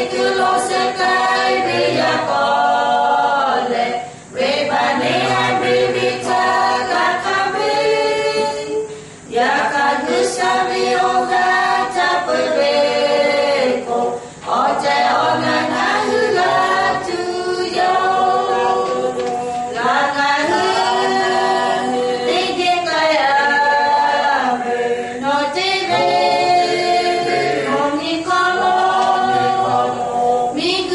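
A small mixed group of two men and two women singing together a cappella, with no instruments. The singing goes in long held phrases with short breaks for breath, the first three about five seconds apart.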